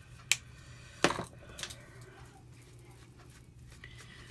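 Two short, sharp plastic clicks, about three-quarters of a second apart, as craft supplies such as a marker and ink pads are handled on the table, over a low steady room hum.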